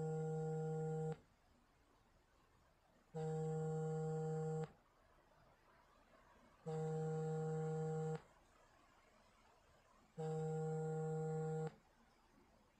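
A steady, low electronic buzzing tone, about one and a half seconds long, repeating four times at a regular interval of about three and a half seconds.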